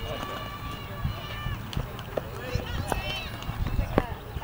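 Several people, among them high children's voices, calling out and chattering over one another, with a sharp knock near the end.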